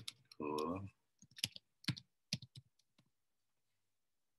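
Laptop keyboard keys clicking as a filename is typed: about a dozen quick keystrokes in uneven runs, stopping about three seconds in. A short spoken syllable comes just before the typing, and it is the loudest sound.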